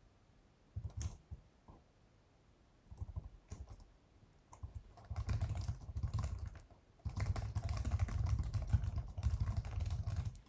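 Typing on a computer keyboard in bursts of rapid keystrokes with short pauses, busiest in the second half.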